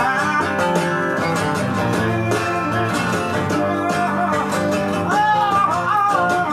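Late-1960s blues and folk rock playing from a vinyl LP: an instrumental passage carried by guitars, with a melody line that bends in pitch near the end.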